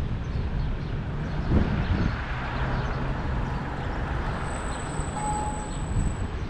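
Road traffic: car engine and tyre noise on the road, a noise haze that swells through the middle, with a low thump about a second and a half in.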